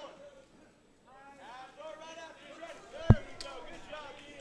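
Background voices calling out, starting about a second in after a brief lull, with one sharp thud, the loudest sound, about three seconds in.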